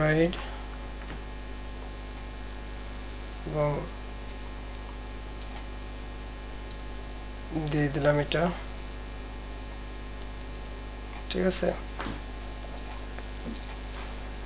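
Steady low electrical mains hum on the recording, broken four times by a few short spoken words.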